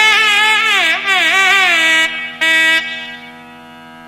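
Nadaswaram playing a Carnatic melody with sliding, ornamented notes over a steady drone. The melody breaks off briefly about two seconds in, returns, then stops near three seconds, leaving the drone alone.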